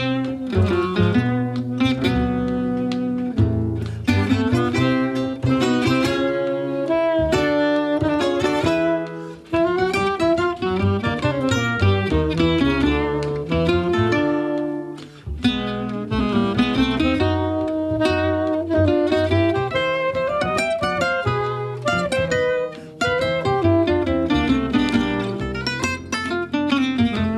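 Live gypsy jazz played by a quartet: tenor saxophone over two acoustic gypsy jazz guitars and an upright double bass.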